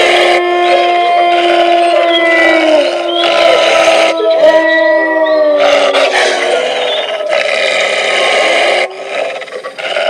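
Wolves howling: several long, overlapping calls that slide slowly down in pitch, dropping in level near the end.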